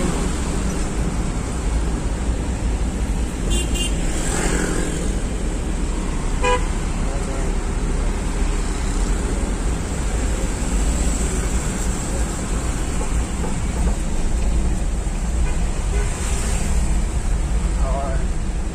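Busy street traffic heard from a moving vehicle: a steady low rumble of engines and road noise, with short horn beeps a few seconds in.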